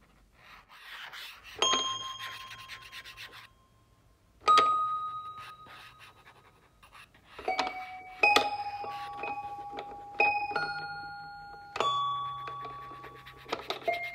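Bell-like struck tones sounding one at a time at different pitches, about six strikes in all, each ringing out and fading slowly. The strikes come closer together in the second half, so their rings overlap, over a faint low hum.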